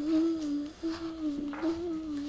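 A young child humming to herself in long, slightly wavering held notes, with a short break for breath about three quarters of a second in.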